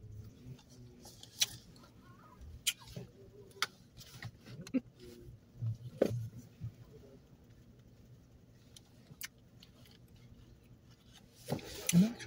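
Quiet inside a car: faint mouth and chewing sounds while someone eats a chocolate-coated ice cream bar, with about five sharp clicks spread through it over a faint low hum.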